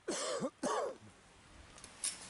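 A person coughing twice in quick succession: two short, loud bursts about half a second apart, both within the first second.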